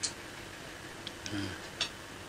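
A quiet pause between spoken sentences holding a few faint, sharp clicks, one near the start and one near the end, with a brief low murmur from the man's voice in between.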